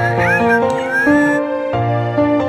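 Soft background music with a husky's high whining yelps over it in the first second and a half.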